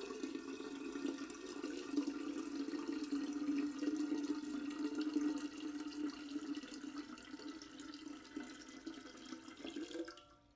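Water pouring in a steady stream from a Brita filter pitcher, thinning out near the end as the pitcher empties.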